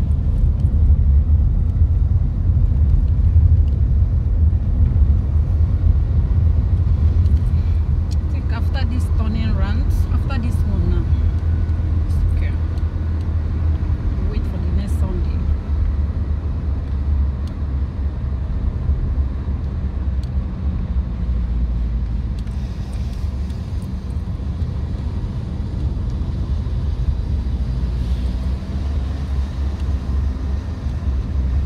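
Car interior noise while driving: a steady low rumble of engine and road heard inside the cabin.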